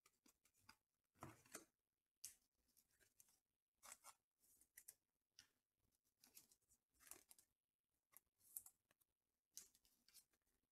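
Near silence broken by faint, brief swishes and taps of trading cards being handled and slid against one another.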